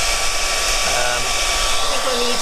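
Handheld hairdryer blowing steadily, drying wet watercolour paint on paper.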